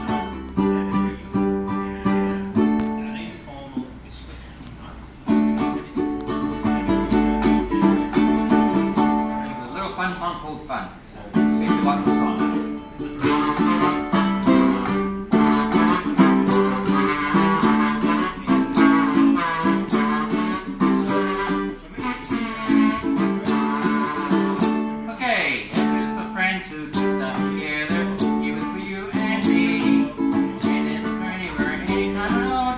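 Ukulele strummed live in a steady rhythm of chords, with two short breaks in the strumming in the first third. From about halfway a higher, wavering melody line plays over the chords.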